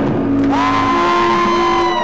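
A live rock band's loud noisy ending. The dense wash of distorted sound and low drone thins out about half a second in and gives way to a held high note with a lower note beneath it; the high note starts to slide down in pitch right at the end.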